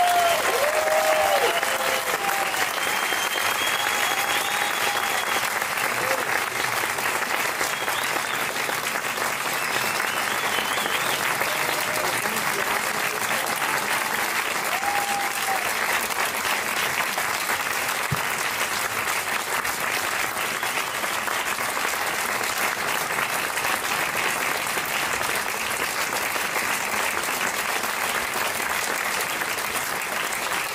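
Audience applauding steadily and loudly, with a few whoops and whistles in the first few seconds.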